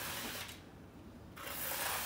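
Hand trowel scraping over wet concrete in a countertop form: a scraping stroke at the start and another about a second and a half in.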